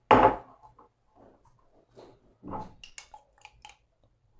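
Kitchen handling sounds of a spoon and ingredient containers: a short knock just after the start, soft scattered handling noises, then a quick run of sharp clicks near the end.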